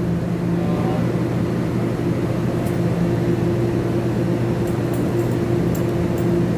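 Steady hum of a TEMU2000 Puyuma electric multiple unit standing at the platform, its onboard equipment running with a few constant low tones. A few faint clicks come near the end.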